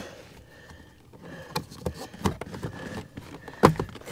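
Scattered sharp clicks and knocks of a plastic under-dash trim panel being handled and worked loose from its clips. They begin about a second and a half in, and the loudest knock comes near the end.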